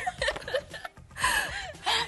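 A group of women laughing and gasping in short, breathy bursts.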